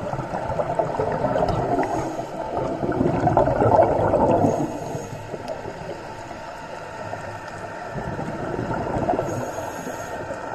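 Scuba divers' exhaled regulator bubbles gurgling underwater, heard through the camera's underwater housing. The bubbling swells to its loudest about three to four seconds in, eases off, and builds again near the end.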